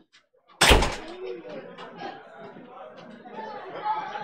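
After a brief silence, a single loud bang about half a second in, followed by the steady chatter of many people talking in a large hall.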